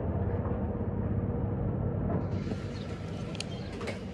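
A steady low rumble, with a couple of light clicks near the end.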